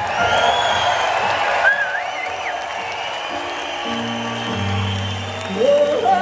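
Live rock band: wordless female vocal swooping in high glides over sustained keyboard chords, with crowd cheering in the first second or so. Deep bass and organ chords come in around the middle, and the voice rises again near the end.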